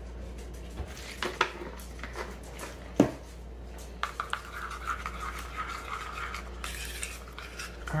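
A metal spoon stirring a thick mayonnaise dip in a small ceramic bowl, scraping and clicking against the sides, after a sharp clink about three seconds in.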